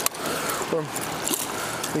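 River current running steadily around the wading angler, with small splashes from a smallmouth bass at the surface beside him.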